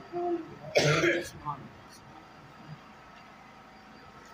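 A man clears his throat once, loudly, about a second in, just after a brief low vocal sound; after that there is only faint background noise.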